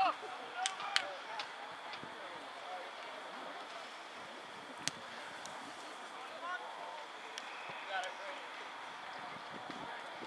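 Faint, distant shouts of players and spectators at an outdoor soccer match over a steady background hiss, with a couple of sharp clicks, one about a second in and one about halfway through.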